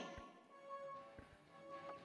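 Faint background music: a few sustained, steady tones, with a couple of faint low taps.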